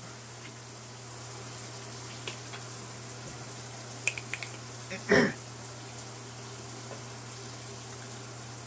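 Steady background hiss with a low hum under it, a few faint ticks about four seconds in, and one brief vocal sound about five seconds in.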